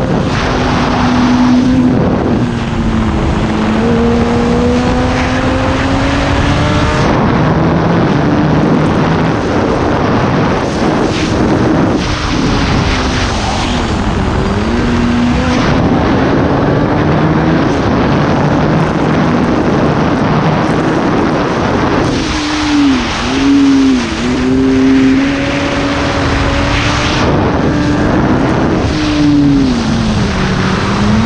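Kawasaki ZX10R's inline-four engine under way at speed, its pitch climbing steadily through the gears and dropping back as the throttle is closed. It gives quick dips and rises in pitch about two-thirds through and again near the end, over steady wind rush on the helmet camera.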